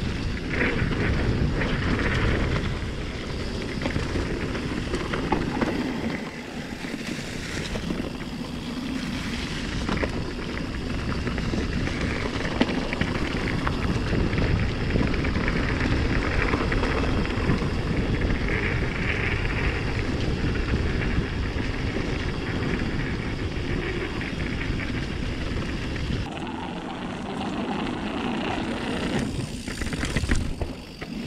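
Mountain bike rolling fast down a dirt trail covered in fallen leaves: steady tyre noise over dirt and dry leaves mixed with wind on the microphone, and a few sharp clicks and rattles from the bike over bumps.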